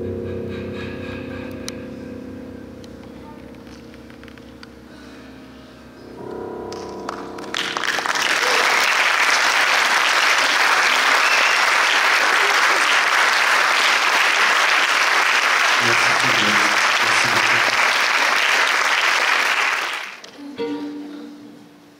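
The last chord of a song on piano and acoustic guitar rings out and fades, then an audience breaks into loud, steady applause about seven to eight seconds in, which cuts off suddenly at the end.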